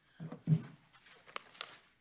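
Papers being handled at a lectern: soft rustling with a few light ticks, after a brief faint murmur near the start.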